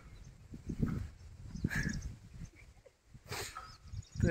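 A few faint, short animal calls, scattered with pauses between them.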